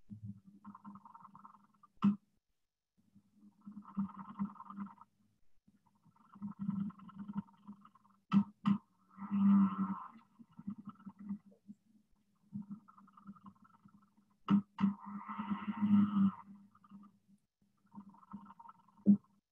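Substrate-borne vibratory courtship signals of a male Habronattus jumping spider, picked up by a phonograph-needle vibration sensor and played back as sound: intermittent buzzing bursts over a low hum, with scattered sharp clicks. The loudest buzzes come about halfway through and near the end.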